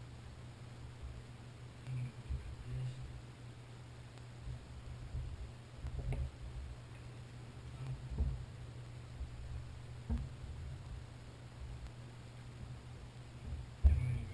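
Faint scattered clicks and light knocks of small outboard fuel-pump parts being handled and fitted together by hand as a new diaphragm goes into a VRO pump, over a low steady hum; the sharpest knock comes near the end.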